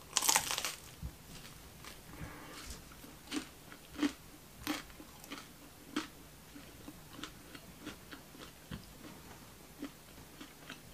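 A bite into the crisp, flaky crust of a baked croissant-crust pizza gives a loud crackling crunch in the first second. Chewing follows, with short crunches about every two-thirds of a second that grow fainter toward the end.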